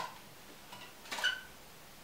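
Faint handling of a small cardboard box and card, two soft brief rustles, one a third of the way in and one just past the middle, over quiet room tone.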